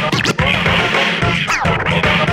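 Vinyl scratching on turntables over a hip hop beat: quick, repeated sweeps falling in pitch as the record is pulled back and forth, a DJ battle routine.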